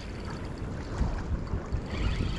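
Wind buffeting the microphone: uneven low rumbles over a steady outdoor hiss.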